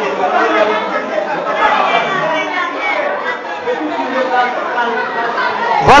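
Several people talking over one another: overlapping voices and chatter, with no single clear speaker.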